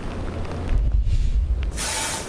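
Wind buffeting a reporter's outdoor microphone, a low uneven rumble. Near the end comes a short loud whoosh, the swoosh effect of a news 'LIVE' graphic transition.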